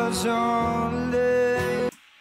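Live pop ballad played back: a male singer holds out a sung word over the accompaniment, with a slight vocal fry as he moves into the diphthong. The music cuts off suddenly just before the end as playback is paused.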